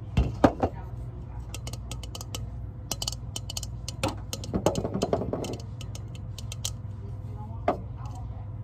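Fingernails tapping on a clear glass in a run of quick, sharp taps, then crinkling and tapping a clear plastic bag about four seconds in, with one more tap near the end. A steady low hum runs underneath.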